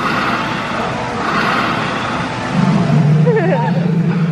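Busy indoor public-space ambience: an even wash of noise with a steady low hum. A brief burst of quickly wavering high calls comes near the end.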